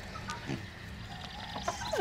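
A hen clucking softly, a few faint short calls over quiet farmyard background.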